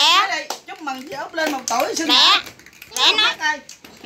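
Young children's high-pitched voices in short, unworded stretches, rising and falling in pitch.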